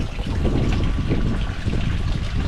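Tilapia splashing and churning the water at the pond surface as they feed, with many small irregular splashes.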